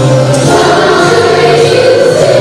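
Children's school choir singing a Christmas song, many voices holding sustained notes together.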